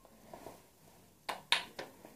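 Wooden kendama knocking: three short clacks in quick succession past the middle, the second the loudest, as the ball is lifted and knocks against the handle.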